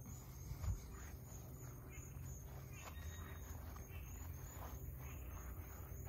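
Quiet outdoor ambience: a steady low background noise with a few faint, short rustles, one slightly louder about a second in, from walking through grass and leafy plants.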